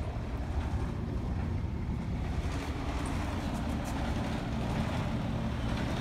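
Wind buffeting a phone microphone, a steady low rumble, with a faint steady hum coming in about halfway through.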